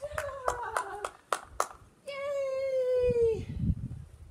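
A person clapping their hands about six times in quick succession while calling, then a long, high-pitched, wordless call held steady and dropping at the end: calling a dog back during a game of fetch.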